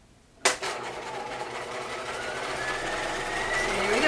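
Bernina domestic sewing machine starting with a click about half a second in, then running steadily through denim, sewing a row of long 5 mm gathering stitches. Its motor whine rises slowly as it picks up speed.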